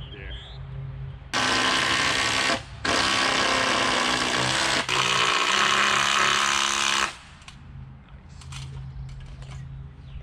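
Power drill running hard in three long runs with two short breaks, as the beam is fastened to its post with bolts.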